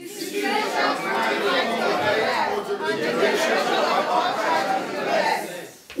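A congregation reading a Bible verse aloud in unison, many voices speaking together and blurring into one another. It dies away just before the end.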